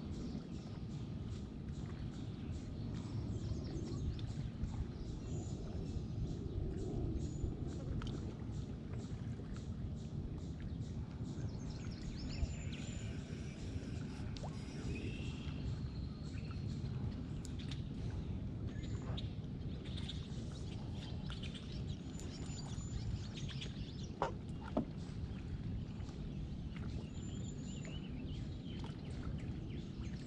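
Outdoor lake ambience: a steady low background rumble, with short high-pitched bird chirps every few seconds.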